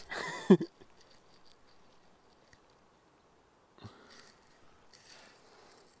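A man's voice trails off in the first half-second, then near silence with a few faint taps and rustles, the clearest about four seconds in.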